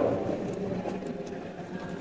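Low, steady background noise in a pause between spoken sentences, with no distinct event standing out.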